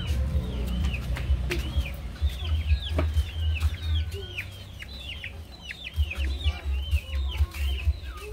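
Chickens, with a steady run of short, high chick peeps, several a second, over a low rumble.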